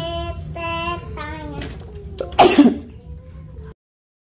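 A child's voice singing a few held notes, followed about halfway through by a short breathy burst like a throat-clear. The sound cuts off abruptly shortly before the end.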